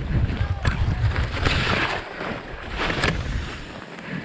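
Skis turning through soft, chopped snow, the hiss of the skis and spray swelling twice with the turns, over a steady rumble of wind on the action camera's microphone.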